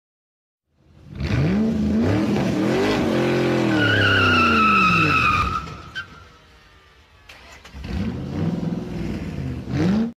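Sports car engine revving up and down, with a tyre squeal from about four seconds in; it fades out, then a second engine comes up and climbs in pitch near the end.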